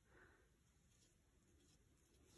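Near silence, with a faint scratch of a paint marker's tip drawing on paper.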